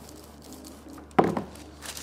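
Clothes iron sliding quietly over baking paper on a wooden table; about a second in, a sudden knock as the iron is stood on its heel, then the baking paper crinkles as it is peeled off the fused crisp packets.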